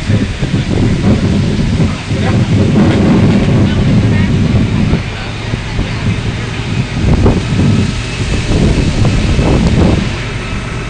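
Wind buffeting the microphone, a loud uneven low rumble, with faint voices in the background.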